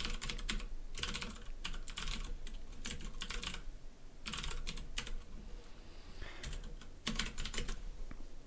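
Typing on a computer keyboard: several quick bursts of keystrokes with short pauses between them.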